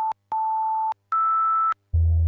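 A run of steady electronic beep tones: two at the same middle pitch, each about half a second long with a short silence and a click between, then one slightly higher; a low buzz begins near the end.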